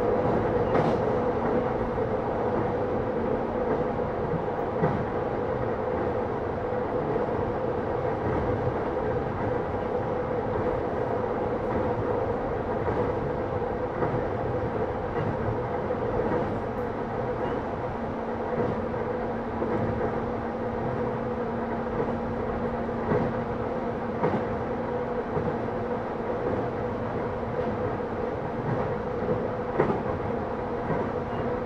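Running sound inside the motor car of a JR East E131-600 series electric train travelling at a steady speed. A steady rolling noise carries an even hum, with occasional clicks of the wheels passing over rail joints.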